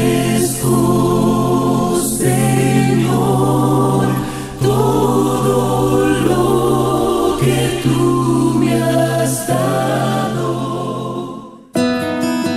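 A choir singing a Christian song in long, held chords. It cuts off suddenly near the end.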